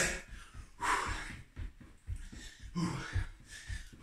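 A man's hard, fast breathing while sprinting on the spot doing high knees, with a loud gasping exhale about a second in. His feet land on a rug-covered wooden floor with short, dull, repeated thuds.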